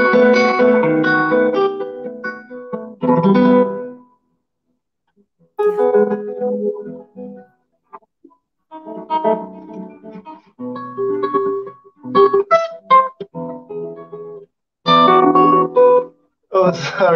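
Classical guitar played fingerstyle, plucked notes in short phrases broken by brief silent pauses, heard through a video call.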